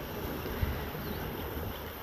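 Wind on the phone's microphone: a steady low rumble with a faint hiss.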